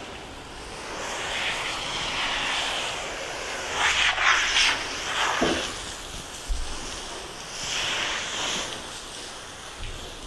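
Water hissing from a hose spray nozzle onto a horse's wet coat, the rush swelling and easing as the spray is moved, loudest about four seconds in.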